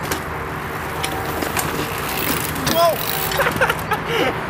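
A dirt-jump bike and its rider crashing onto the dirt, with several short knocks and clatters. In the second half a person cries out in short yells that slide up and down in pitch, the loudest about three seconds in.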